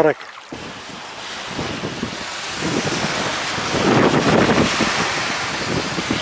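Wind blowing across the microphone together with small waves lapping on a sandy shore: a steady rushing noise that swells about halfway through.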